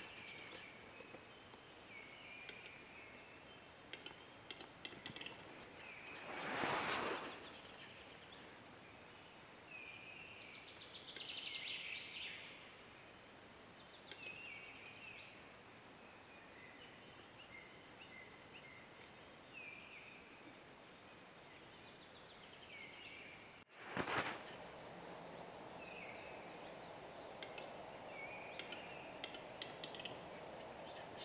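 Quiet spring forest ambience with small birds chirping again and again, and a displaying capercaillie cock's song in the pine: faint ticks, then about two seconds of rasping whetting around ten seconds in. Two brief louder rushes of noise come about seven seconds in and just after twenty-four seconds.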